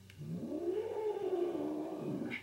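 Domestic cat giving one long, low yowl of about two seconds that rises and then falls in pitch. It is a hostile warning at the person near its food bowl.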